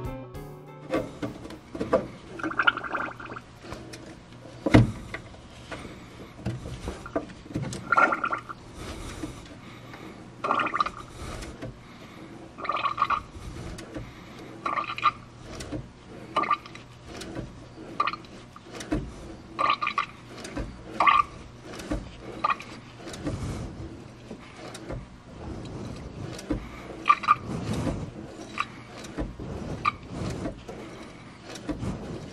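Brake fluid and air gurgling and spurting in short bursts every couple of seconds as a freshly rebuilt brake master cylinder is bled on the car, with scattered clicks and knocks from a wrench.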